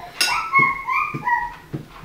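A series of short, high-pitched whimpering cries, wavering up and down in pitch, with a few soft knocks among them.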